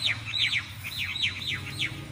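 A bird chirping: runs of short, quickly falling notes, repeated several times and stopping near the end.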